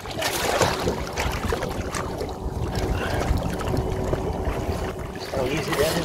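A big redfish thrashing and splashing at the water's surface beside a boat, then scooped into a landing net. Wind buffets the microphone throughout, and the splashing is strongest in the first second or so.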